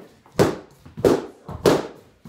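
Training sticks striking in a martial-arts pad drill: sharp, even hits about every 0.6 s, three loud ones with a couple of lighter taps between.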